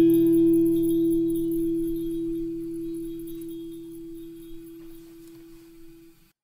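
Acoustic guitar's final chord ringing out at the end of a song, one high note standing out above the lower strings, fading slowly away over about six seconds.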